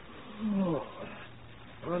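A man's weary vocal groan, one short voiced sound falling in pitch about half a second in. It is made by an actor playing a pathologist who has worked through the night.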